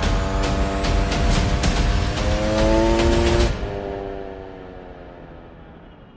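Dirt bike engine revving higher as it speeds along, under percussive trailer music. About three and a half seconds in, the sound drops away abruptly and the engine tone sinks and fades as the bike leaves the cliff edge and goes airborne.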